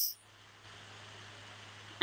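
Faint steady low hum with light hiss from a video call's audio line in a pause between speakers.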